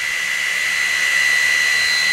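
Steady whirring hiss with a thin, unchanging high whine: the cooling fan of the Aufero Laser 2's 10-watt diode laser module, running while the machine sits powered up with its focus beam on.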